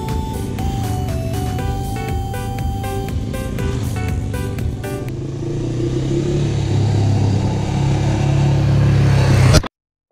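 Background music with a beat for the first half, then an off-road motorcycle engine running and growing louder, until the sound cuts off abruptly near the end.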